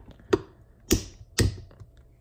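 Three sharp clicks about half a second apart as a new brass gear is pressed and seated into the gear housing of a Volkswagen Eos sunroof motor.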